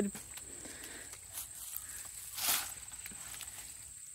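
A steady high-pitched insect trill runs throughout, with a couple of footsteps or brushes through dry vines and leaves, the louder one about two and a half seconds in.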